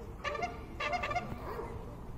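A dog giving two short, high-pitched whining yelps about half a second apart.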